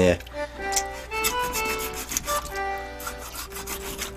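Wet rubbing and rasping as hands pull the stomach and innards out of a large anglerfish, under background music with held notes.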